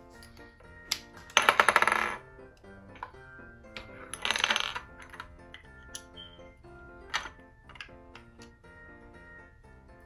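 Hard plastic stacking pegs clattering as a child rummages through a pile of them. There are two rattling bursts, about a second and a half in and around four seconds in, and single clicks in between as pegs are picked up and pushed together.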